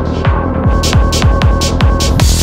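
Dark psytrance music: a fast kick drum, each beat dropping in pitch, about three a second, under a steady droning tone. The high hi-hat sound thins out briefly at the start, then returns.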